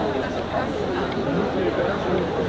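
Crowd chatter: many voices talking over one another at once, none standing out.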